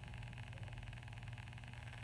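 Room tone: a faint, steady low hum with light hiss and no distinct events.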